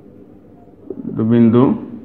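A man's voice holding one drawn-out syllable for about half a second, a little past the middle. Faint ticks of a marker writing on a whiteboard come before and after it.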